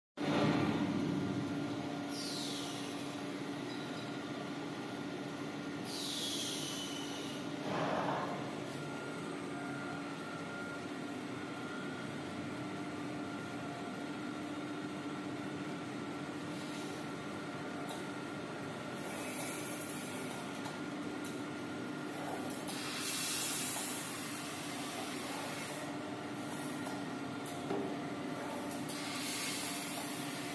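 Band-saw log cutter for toilet-paper rolls running with a steady hum. Short hissing bursts come through it several times, the first two falling in pitch.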